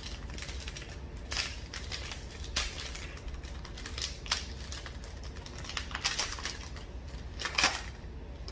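Foil wrapper of a trading-card pack crinkling in the hands in short, irregular bursts as it is torn open, the loudest crackle coming near the end.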